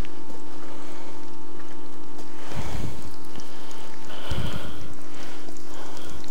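Onions and carrots sizzling steadily in a wide frying pan over a charcoal grill, with two dull thuds partway through.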